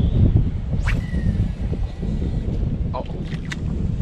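Wind buffeting the microphone: a steady low rumble, with a few brief faint clicks over it.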